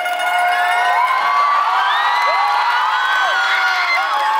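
A crowd of students cheering and shouting, many voices overlapping in rising and falling whoops, as the dance music dies away about a second in.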